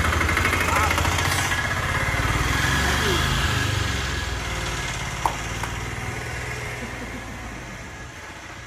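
Engine of a small goods-carrier truck running, gradually fading away over the few seconds, with voices around it.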